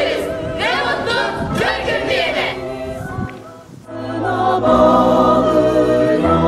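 A group of voices singing a slow song over a musical backing, dying away about three and a half seconds in. Steady, held instrumental music comes in at about four seconds.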